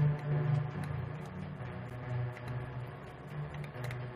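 Electronic beat from a MIDI keyboard and computer, played over speakers: low sustained bass notes shifting in pitch every second or so, with softer tones and faint ticks above.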